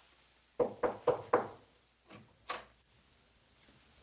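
Four quick knocks on a wooden door, followed about a second later by two fainter clicks as the door is opened.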